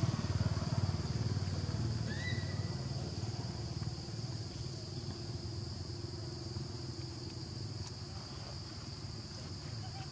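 A motorbike engine passing on the road, loudest at first and fading over the first few seconds into a low running drone. Under it is a steady high-pitched hum, and a short rising squeak comes about two seconds in.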